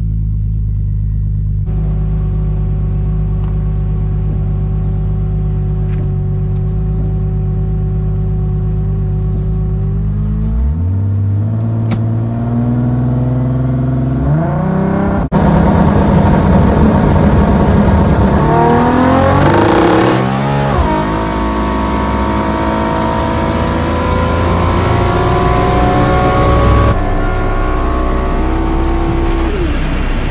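Turbocharged 1994 Toyota Supra drag car engine idling steadily, then revving up at the start line about ten seconds in. A few seconds later it launches at full throttle and pulls hard through the gears, its pitch climbing and dropping at each shift, on about 15 pounds less boost than it normally runs.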